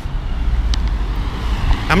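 A car driving up the street and passing close by, its engine and tyre noise growing louder toward the end over a steady low rumble.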